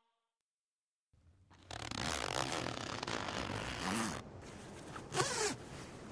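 A zipper pulled in one long stroke of about two and a half seconds, starting over a second in. It is followed by a quieter steady hiss.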